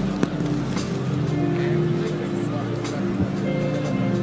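Background music of slow, held chords, with many voices praying aloud at once underneath.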